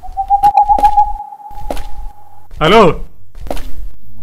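Footsteps on a path scattered with dry leaves, as sharp irregular clicks, under a steady high held tone that lasts about two and a half seconds and then stops. A man's voice calls 'hello' just after the tone ends.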